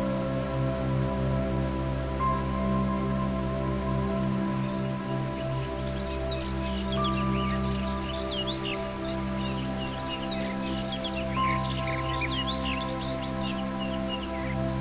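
Soothing new-age background music of sustained, steady synth tones over a low pulsing note. Quick high chirping, like birdsong, joins in from about halfway through.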